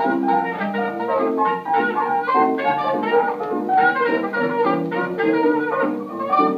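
A 1927 jazz band's 78 rpm shellac record playing on a turntable: an instrumental chorus with no singing, quick notes throughout. It has the dull sound of an old recording, with no highs.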